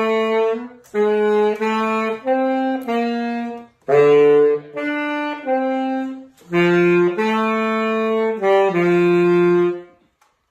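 Unaccompanied saxophone playing a melody of sustained single notes in three phrases, with short breath gaps between them, ending on a long held note just before the end.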